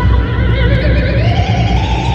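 Intro music with a steady low drone, over which a long wavering cry rises in pitch, a spooky sound effect.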